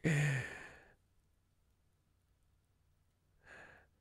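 A man's breathy exhale with a low voiced start, fading out within the first second as a laugh trails off, followed by near silence with one faint breath about three and a half seconds in.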